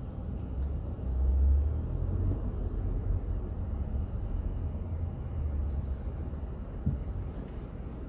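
Low, steady rumble of a car's engine and tyres heard inside the cabin as it creeps forward in stop-and-go traffic, swelling about a second in as the car pulls ahead. A single short knock near the end.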